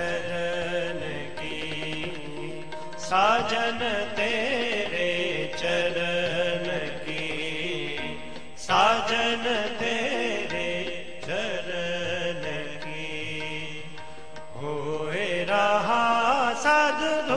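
Sikh kirtan: a man sings a devotional hymn in ornamented, gliding phrases over steady held accompaniment notes. Louder phrases swoop upward about three seconds in and again about nine seconds in.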